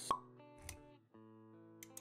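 Intro sound effects over music: one sharp plop just after the start, the loudest sound, then a low thump a little over half a second in. From about a second in, held notes of background music sound, with a few quick clicks near the end.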